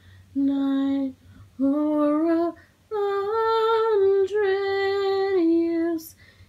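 A woman's voice singing a slow, legato phrase in three stretches with short pauses for breath between them. The last stretch is a long held note lasting about two and a half seconds.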